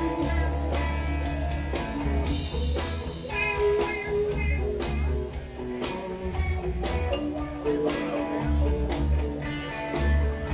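Live rock band playing: electric guitars over a heavy bass line and drums, recorded from among the audience.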